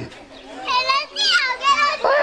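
Children's high-pitched voices calling out excitedly, beginning a little under a second in and continuing in short wavering cries.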